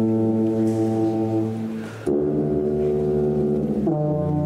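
Two sousaphones sounding long, held low notes together. The first note fades out with a brief break about two seconds in, then a new note is held, changing again at the very end.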